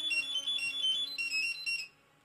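Mobile phone ringing with a fast melody of high electronic beeps, cutting off suddenly near the end as it is picked up.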